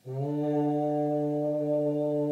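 Overtone singing: a low, steady sung drone starts right at the beginning and is held, with several overtones ringing clearly above it.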